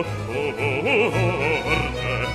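Baroque opera aria: a bass-baritone sings a long florid run on one vowel over a string orchestra, the pitch moving quickly up and down.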